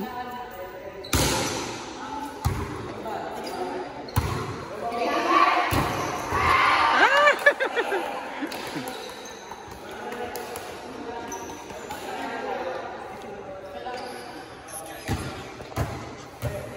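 Volleyball being hit hard in practice: several sharp smacks of the ball off hands, arms and the floor, a second or two apart, echoing in a large covered court. Players' voices call and shout in the middle.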